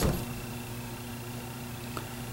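Room tone in a pause of speech: a steady hiss with a faint constant electrical hum.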